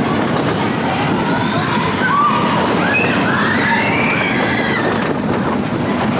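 Mine-train roller coaster train running along its steel track, a loud, steady noise of wheels and cars. Riders' voices call out over it for a couple of seconds midway.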